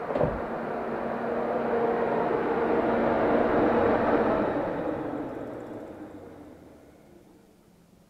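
Volvo two-speed electric radiator fan in a BMW E39 M5 running on after the ignition is switched off, then cutting out about halfway through and winding down to near silence. A single thump comes just after the start.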